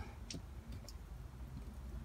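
A few faint clicks from the plastic valve handles of an RV Nautilus water-system panel as they are turned to a 45-degree drain position, over a low steady rumble.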